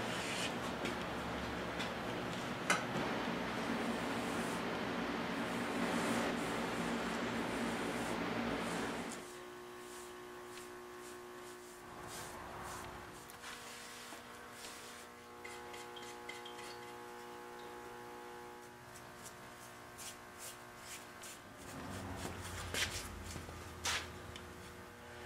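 Workshop room tone: a steady electrical hum under faint noise. It drops suddenly to a quieter hum about nine seconds in, and a few light knocks sound near the end.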